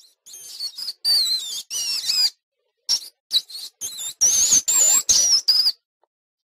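A small animal's high-pitched squeaks and chirps: a run of short calls whose pitch slides up and down, in several bursts with a brief pause partway through.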